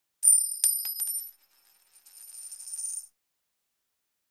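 Sound effect of a coin dropping: a few quick, high, ringing metallic strikes, then after a short pause a rattling ring that grows louder as the coin spins down and stops suddenly about three seconds in.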